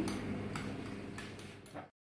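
A few light ticks of a glass stirring rod against a small glass beaker over a steady low room hum. The sound fades and cuts to silence near the end.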